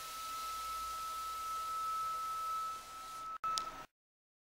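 Steady electronic hiss with a constant high-pitched whine from the recording, cut by a sudden dropout and a short sharp click near the end, then cutting off to silence.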